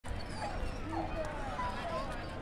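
Indistinct voices of several people talking at once, no words made out, over a steady low outdoor rumble.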